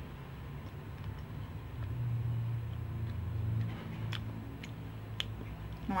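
Quiet chewing of soft dried fruit, with a few small sharp mouth clicks near the end, over a low steady rumble that swells for a second or two in the middle.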